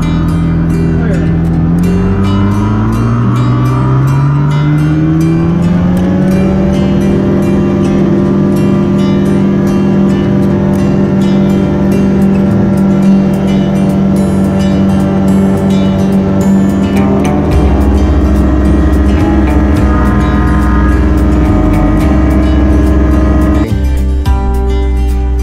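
Light aircraft engine and propeller heard from the cockpit, rising in pitch from a low run to full power about two seconds in, then holding a steady high drone as the plane takes off and climbs.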